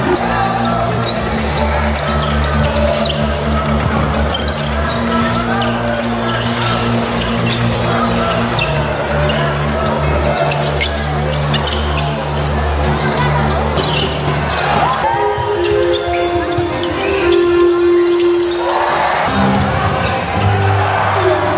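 Basketball game on a hardwood court: the ball bouncing and sharp knocks of play, under loud music with a deep, steady bass line that changes about 15 seconds in.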